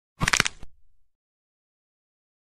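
A quick run of sharp cracks, several in close succession lasting about half a second just after the start, with a short low rumble trailing off behind them: an edited-in intro sound effect.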